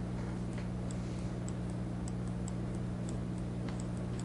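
Faint, evenly spaced ticking, about two ticks a second, over a steady low electrical hum.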